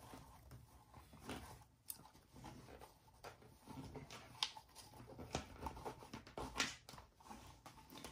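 Faint rustling and scraping of burlap ribbon as a pipe cleaner is pushed through the wreath, with a few soft sharp ticks about halfway through.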